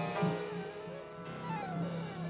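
Live avant-garde jazz quartet playing: piano chords under a melodic line that slides down in pitch several times, over a held low note.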